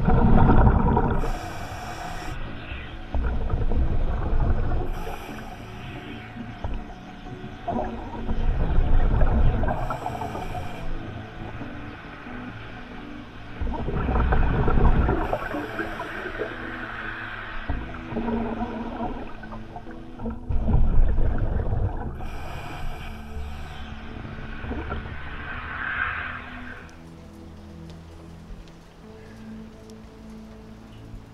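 Scuba diver breathing through a regulator underwater: about five breath cycles several seconds apart, each a loud low bubbling rush of exhaled air followed by a short hiss of the regulator.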